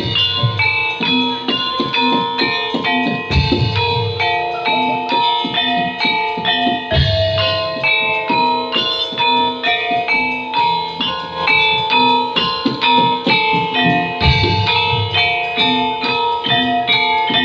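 Javanese gamelan ensemble playing: saron-type bronze metallophones struck with wooden mallets in a quick, steady stream of ringing notes, with a deep stroke about every three and a half seconds.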